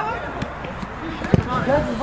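A football kicked once on an artificial pitch, a single sharp thud a little past halfway through, amid voices calling from the players and sideline.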